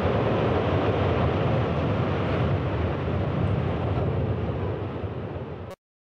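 A loud, steady rumble and hiss of outdoor noise that fades a little and cuts off abruptly near the end.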